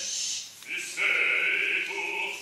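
Operatic singing: a short sung sound at the start, then a voice holding one sung note from just under a second in.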